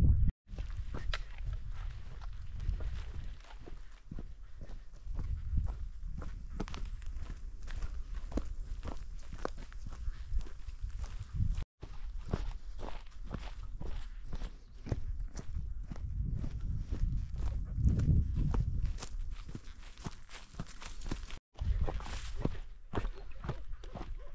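A hiker's footsteps walking steadily down a dirt trail, roughly two steps a second, over a low rumble on the microphone. The sound drops out suddenly three times for an instant.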